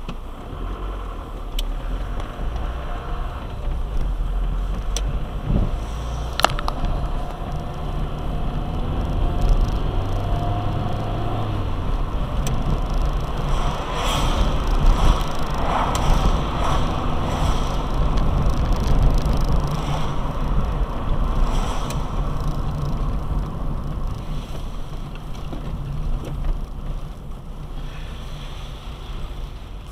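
Car driving on a wet road, heard inside the cabin: a steady low engine and road rumble with tyre noise, and a few sharp clicks in the first several seconds.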